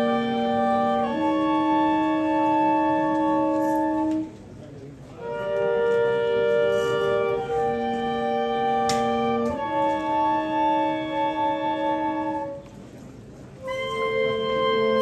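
Wind instruments playing a slow processional chorale in long held chords. The phrases are broken by two short pauses, about four seconds in and again near the end.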